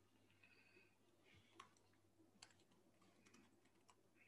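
Near silence: room tone over a Zoom call, with a few faint sharp clicks, the clearest about one and a half seconds and two and a half seconds in.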